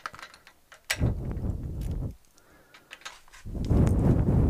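A metal locking hitch pin is pushed through a trailer hitch receiver and capped, with a sharp click about a second in. Two stretches of low rumbling noise run around it.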